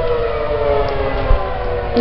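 Outdoor tornado warning siren wailing: a steady pitched tone that slowly falls in pitch.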